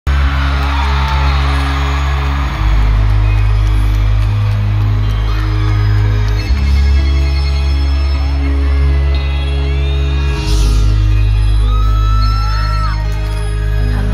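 Live band music from a stadium sound system, heard from within the crowd, with deep sustained bass chords changing every few seconds. The crowd whoops and cheers in the first seconds.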